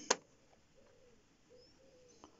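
A single sharp click just after the start, then a quiet room with a few faint, short low tones.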